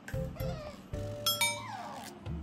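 Light background music with steady notes, a bright chime about a second and a half in, and a falling tone that slides down just after it.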